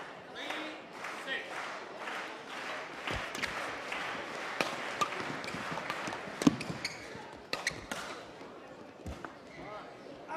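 A badminton rally: rackets hit the shuttlecock in a string of sharp cracks, spaced about a second apart, with the loudest hit about six and a half seconds in. Steady crowd chatter runs underneath.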